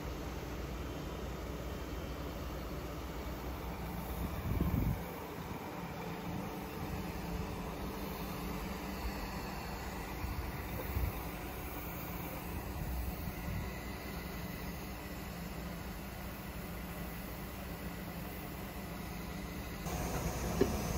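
Steady low drone of idling bus diesel engines across the yard, with a brief low buffet about five seconds in.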